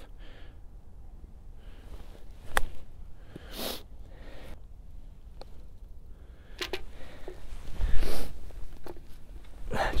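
A golf club strikes the ball once, a short sharp click about two and a half seconds in, amid sniffing and breathing, with a low thump near the end.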